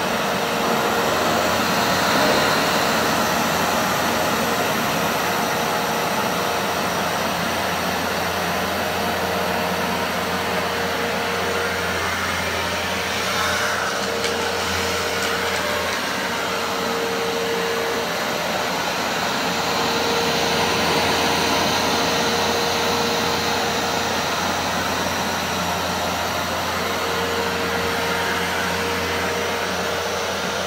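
Hoover Dual Power Max upright carpet cleaner running steadily while extracting on carpet, a loud even motor-and-suction noise with a faint tone that comes and goes.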